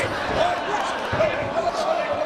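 Dull thumps on a wrestling ring's canvas mat during a pinning hold, heard under a wavering voice and the chatter of the audience.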